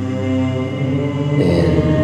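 Choral doom music: layered choir voices holding long, sustained chords without words. About one and a half seconds in, more parts come in and the sound grows fuller and a little louder.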